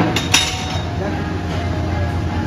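Two sharp metal clinks in quick succession, gym weights knocking together, followed by a steady low hum.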